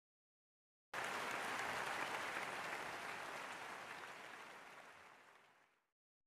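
Audience applause that cuts in abruptly about a second in and fades away over the next three seconds.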